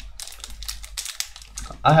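Foil wrapper of a Pokémon trading-card booster pack crinkling and crackling between the fingers as its sealed top is picked at to tear it open, a quick run of small clicks.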